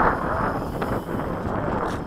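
Wind buffeting the microphone: a steady, rumbling noise that eases slightly toward the end.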